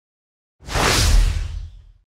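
A whoosh transition sound effect with a deep low rumble under it. It starts about half a second in, swells, fades over about a second, and then cuts off.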